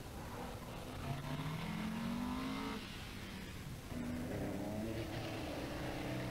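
Rally car engine accelerating hard on a stage: the revs climb for about two seconds, drop sharply at a gear change, then pick up again.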